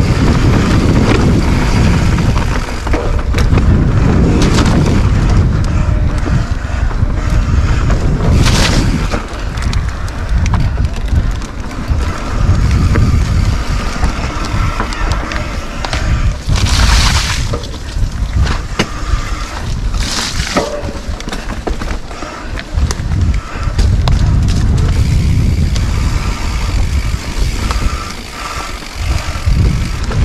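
Electric mountain bike ridden fast down a dirt singletrack: wind rumbling on the camera microphone and knobby tyres rolling over dirt and rocks, the rumble rising and falling with speed. Three short, louder hissing rushes stand out, about a third, just past halfway and two-thirds of the way through.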